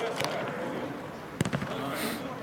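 Football kicked on artificial turf: a few sharp kicks, the loudest about one and a half seconds in, ringing in the large dome hall.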